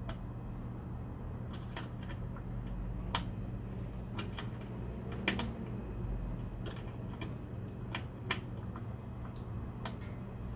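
Irregular light clicks and taps, about ten of them, from hands working a trim part into place at a car door's window frame, over a steady low hum.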